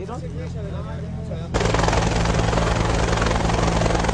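Helicopter flying close by: a steady low drone of engine and rotor, with a much louder rush of rotor noise coming in suddenly about a second and a half in.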